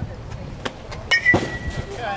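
Softball bat striking a pitched ball about a second and a half in: a sharp ping that rings briefly, after a couple of faint clicks.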